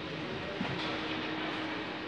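Steady background noise of a busy exhibition hall, an even hubbub with a constant low hum running under it, and one short tap about half a second in.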